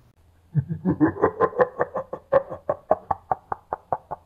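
A man laughing in a long run of short, rapid 'ha' syllables, about five a second and getting quicker toward the end.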